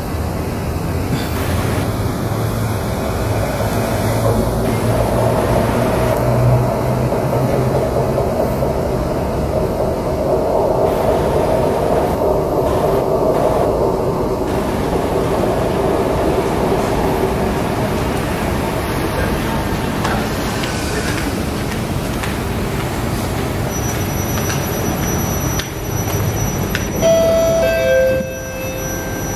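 Kawasaki C151 metro train running into the station and braking to a stop, a steady rumble and hum with motor tones through the first half. Just before the end, a two-note door chime falls in pitch.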